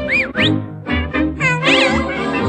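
Orchestral cartoon score with short arching pitch glides that rise and fall over it, once near the start and several together near the end.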